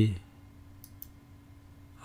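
Two quick computer mouse clicks, about a fifth of a second apart, a little under a second in, over faint room hiss.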